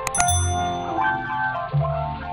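A mouse-click sound effect, then a short, bright bell ding for a YouTube notification bell being switched on. The ding rings out and fades within about a second, over background music.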